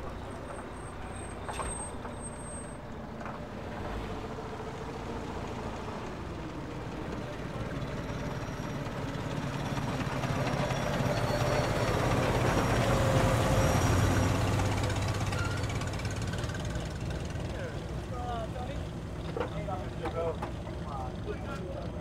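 A car driving past close by. Its engine and tyre noise build up, are loudest about two thirds of the way in, then fade. Faint voices can be heard near the end.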